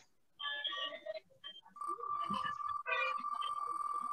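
Faint electronic music from an online name-picker wheel as it spins, with a long steady high note setting in about halfway.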